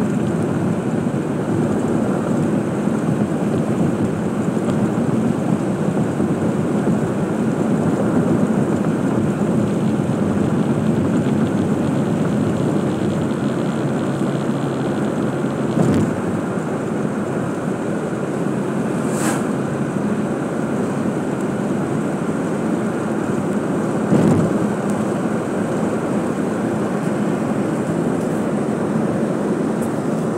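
Steady road, engine and wind noise inside a car's cabin while driving along a highway, with two brief thumps, one about halfway through and one a little past two-thirds.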